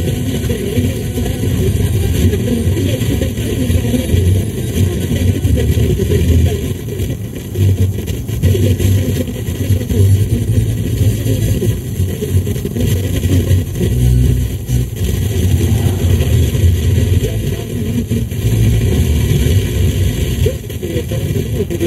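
Road and engine noise heard inside a car cruising at motorway speed: a steady low rumble that rises and falls slightly.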